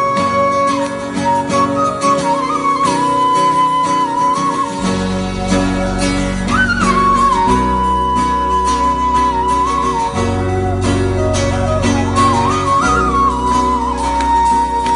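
A live band plays an instrumental intro: a high, flute-like lead melody with small bends and slides over acoustic guitar. A heavy bass line comes in about five seconds in.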